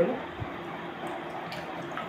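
Quiet room tone with a soft low thump and a few faint clicks as dried cranberries are picked from the palm by hand.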